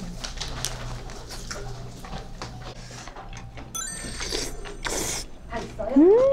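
People eating at a table: chopsticks and spoons clicking against bowls, with chewing noises. A short rising chime-like sound effect comes about four seconds in.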